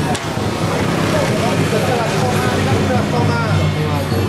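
Motor vehicle engines running in the street, with scooters coming closer near the end, under people's voices.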